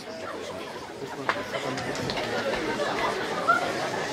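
Audience chatter: many voices talking at once, none clear, getting louder, with a single sharp click about a second in.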